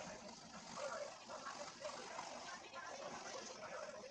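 Faint, indistinct background talk, too low for words to be made out.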